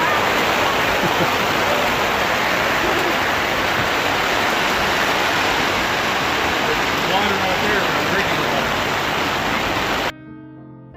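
Heavy rain pouring down, a loud, steady rushing hiss, with faint voices underneath.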